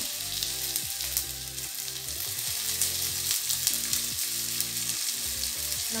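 Chopped onions, tomatoes and garlic frying in oil and butter in a kadhai: a steady sizzle with small crackles and pops.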